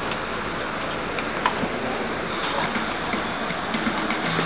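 Steady background noise of a large indoor hall, broken by a few scattered sharp ticks; the loudest tick comes about one and a half seconds in.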